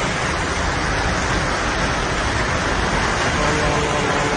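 Heavy rain and flash-flood water rushing down a city street, a steady loud hiss.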